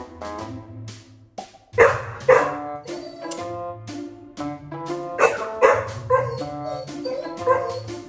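Golden retriever puppy barking: two quick barks about two seconds in, and two more about five seconds in, over background music.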